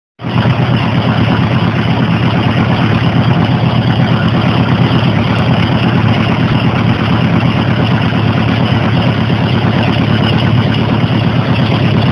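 1983 Honda Gold Wing's flat-four engine idling loud and steady.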